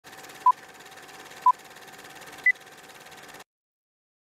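Old-film countdown leader sound effect: three short beeps a second apart, the first two at one pitch and the third higher, over a steady hiss and hum. It cuts off suddenly about three and a half seconds in.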